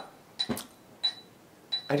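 A chandelier knocked and tinkling: a few light clinks over about a second and a half, each with a short, high ring.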